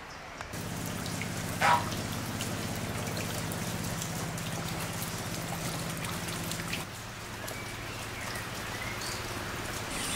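Rain falling, many separate drops ticking, over a low steady hum that stops about seven seconds in. A brief louder sound cuts through just under two seconds in.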